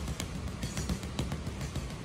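A quick, uneven run of short gloved punches landing on a heavy bag, several a second, over background music.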